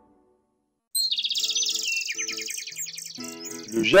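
Birds chirping in quick, high-pitched trills that start about a second in and drop lower in pitch around two seconds in, with light background music coming in near the end.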